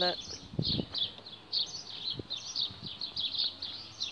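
Small songbirds chirping, a fast, continuous string of short high chirps, with two dull low thuds, one under a second in and one about two seconds in.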